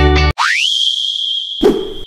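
Intro sound effects: guitar music cuts off, then a tone sweeps quickly up in pitch and holds steady and high with a hiss over it, and a thud lands about one and a half seconds in.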